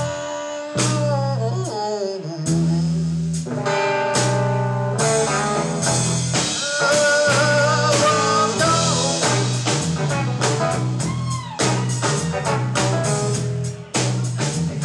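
A blues trio playing live: electric guitar lead lines with bent notes, over electric bass and a drum kit.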